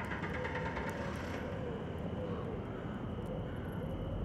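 Outdoor ambience of steady, low traffic rumble. A tonal whine of several steady pitches fades out after about a second and a half.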